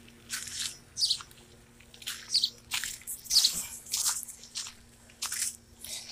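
Footsteps crunching on gravel and dirt, about two steps a second.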